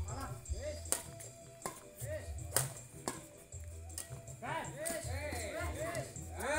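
Badminton rackets striking a shuttlecock during a rally: four sharp cracks, roughly half a second to a second apart, in the first half, over voices and music.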